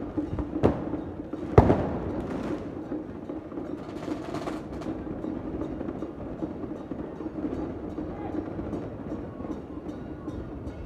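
Street sound of a night temple procession. Two sharp bangs come in the first two seconds, the second the loudest and followed by a brief hiss. Under them runs a steady hum with faint, regular percussion beats.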